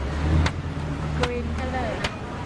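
Outdoor street-market background: a steady low traffic rumble with scattered voices and a few sharp clicks.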